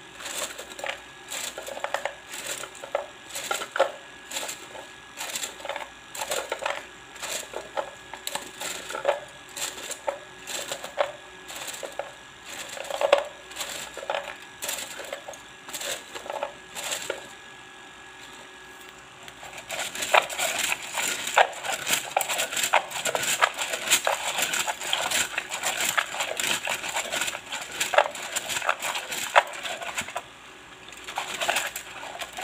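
Thin wooden fortune sticks clacking against each other in a cup, first as separate clicks about twice a second as a hand stirs them. After a short pause about two-thirds of the way in, there is a fast continuous rattle as the cup is shaken to draw a fortune stick (xóc xăm).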